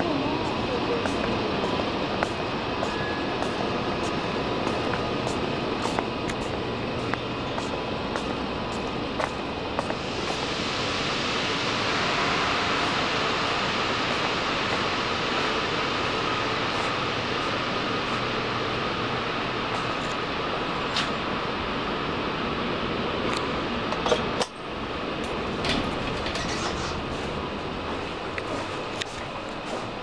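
Busy railway station hall ambience: distant crowd voices and footsteps echoing in a large hall. From about a third of the way in a louder rushing noise swells and holds for several seconds. A single sharp knock comes about three quarters of the way through.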